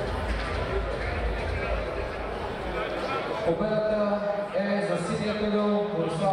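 A low rumble and hall noise, then about halfway through a ring announcer's voice over the arena PA, drawn out in long held vowels as he calls the decision of the bout.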